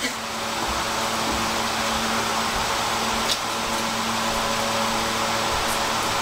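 Steady whirring noise with a faint low hum, starting abruptly and holding even throughout.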